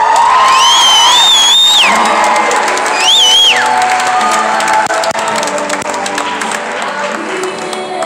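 Audience cheering and applauding over a slow sung ballad, with two long high-pitched whoops in the first few seconds and clapping throughout.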